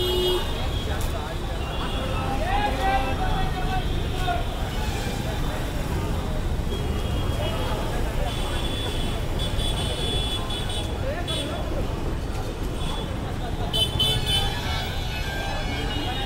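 Busy street ambience: a steady traffic rumble with crowd voices, and vehicle horns tooting twice, once about halfway through and again near the end.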